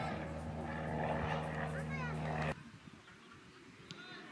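A steady engine drone with shouting voices over it, cutting off abruptly about two and a half seconds in; a quieter open-air background follows.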